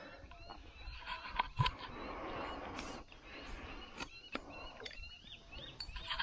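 A hooked bull shark splashing at the surface close to a small boat, with a burst of water noise about two seconds in and a few sharp knocks. Birds chirp in the background.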